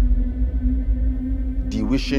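Background music: a low sustained drone over a deep throbbing bass hum. A man's voice starts speaking near the end.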